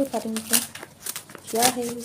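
Cardboard packaging rustling and crinkling as it is handled and pulled apart, with sharp rustles about half a second in and again near the end. A woman's voice speaks briefly at the start and near the end.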